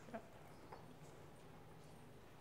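Near silence: hall room tone, with a faint short word at the start.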